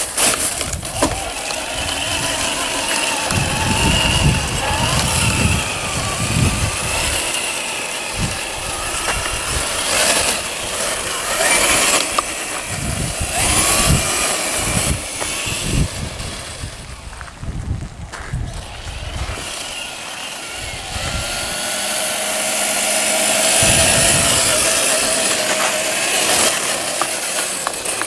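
Electric motor and gearbox of a Traxxas TRX-4 RC crawler on a 3S LiPo whining, the pitch rising and falling with the throttle as it drives. Low rumbling gusts of wind on the microphone come and go underneath.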